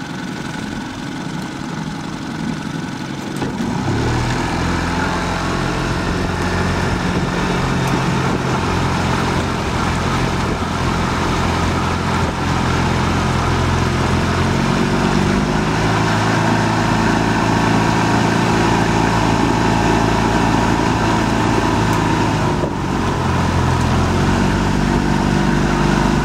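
Small motorboat's engine running steadily, getting louder about four seconds in, with its pitch stepping up or down a few times as the throttle changes.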